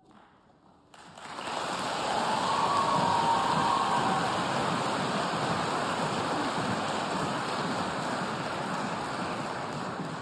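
A large audience applauding in a concert hall, breaking out about a second in after a brief hush and holding steady, easing slightly near the end.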